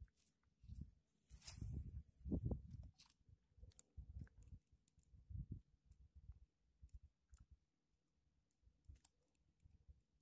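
Faint, irregular clicking and low handling thumps from a small spinning reel being cranked and the rod being worked by hand. There is a brief rush of noise about one and a half seconds in.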